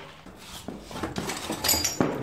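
Footsteps on old wooden floorboards strewn with rubble and broken glass: scattered knocks and crunches, with a few sharp glassy clinks near the end.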